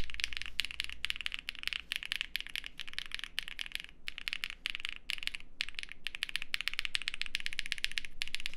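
Fast typing on the numpad of an Extreme75 mechanical keyboard with KTT Strawberry switches and GMK keycaps: quick runs of keystroke clacks with a couple of brief pauses. It sounds like a PE foam board.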